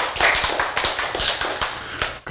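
Audience applauding: a dense, irregular run of hand claps that thins out near the end.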